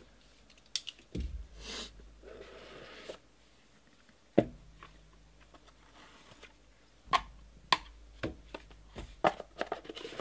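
Trading cards and rigid plastic card holders handled on a table: a soft rustle about two seconds in, then a string of sharp taps and clicks as cards and holders are pressed and set down.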